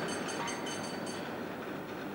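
Mechanical clattering: a steady rumble with a fast run of light, evenly spaced clicks, about six a second, that stops about a second in.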